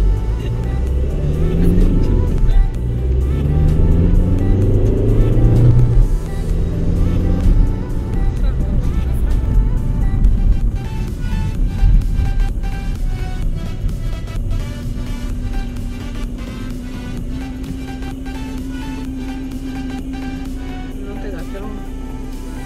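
Car engine heard from inside the cabin, rising in pitch several times as it accelerates through the gears over the first six seconds, under music; in the second half the music's regular beat is the main sound.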